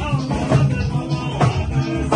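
Live Fuji band music: hand drums and percussion striking over sustained pitched instrument notes, played loud.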